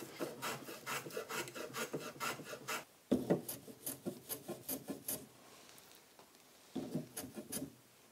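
A small block plane taking short, quick shaving strokes along the edge of a wooden piece held in a bench vise. The strokes come in three runs, with a pause of more than a second near the end before a last few strokes.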